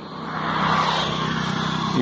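A small motorcycle passing from behind, its engine growing louder about half a second in and running steadily as it goes by.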